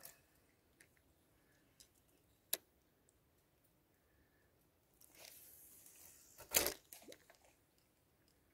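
Quiet handling noise close to the microphone as fishing line and rod are handled: a few sharp clicks early, a hissy rustle from about five seconds in, and one louder rustling knock at about six and a half seconds.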